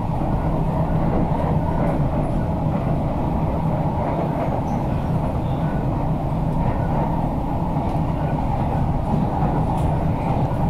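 C151C train cabin noise while running at speed: a steady low rumble of wheels on track that holds even throughout.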